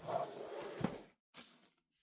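Clear plastic zip-lock bag rustling as it is handled and set down on a wooden table, with a light tap just under a second in. The sound fades to near silence after about a second.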